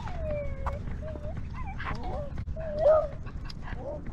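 A small dog whining close to the microphone, in several short whines that rise and fall. A long falling whine opens the run and the loudest comes about three seconds in. Low rumbling movement noise from the dog-mounted camera runs underneath.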